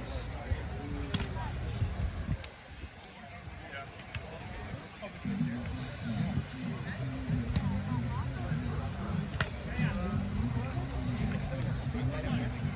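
Volleyball hits on sand-court play, a sharp smack about a second in and another near the end, over low wind rumble on the microphone. From about five seconds in, music plays in the background along with faint distant voices.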